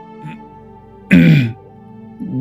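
A man gives one short, loud cough, clearing his throat about a second in, after a sip from his cup. Soft background music with steady held tones plays underneath.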